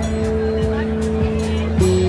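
Live rock band playing a slow ballad, with electric guitars, bass and drums. One long note is held over the steady bass and changes near the end.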